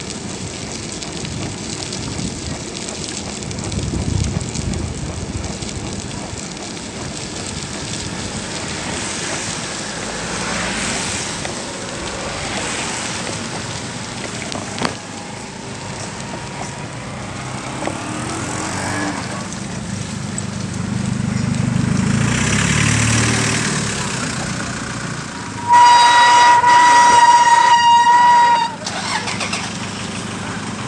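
Street traffic and wind noise heard from a moving bicycle, with a vehicle rumbling past a little after the middle. Near the end a vehicle horn gives one long, steady toot of about three seconds, the loudest sound.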